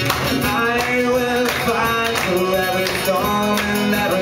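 Live acoustic guitar strummed in a steady rhythm, with a man singing held notes of a slow song.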